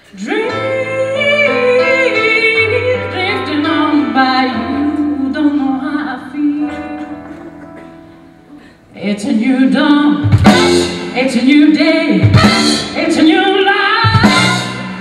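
Live blues band with a woman singing into a handheld microphone. For the first eight seconds she sings over sustained low accompaniment notes, fading gradually, then about nine seconds in the full band comes in loud with drum and cymbal hits under her voice.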